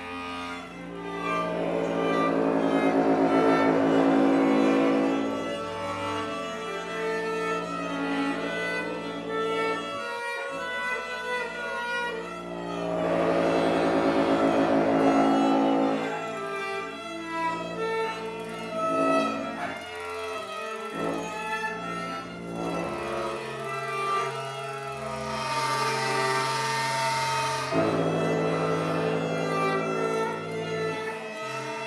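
Improvised music on bowed string instruments: long held low notes under a shifting higher line, swelling louder twice. Near the end a high hiss joins in for a couple of seconds.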